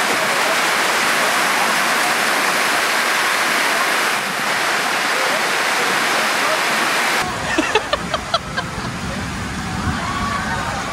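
Torrential tropical rain pouring down, a steady, even hiss. About seven seconds in it cuts abruptly to a different scene with deeper background noise and a run of short sharp clicks and knocks.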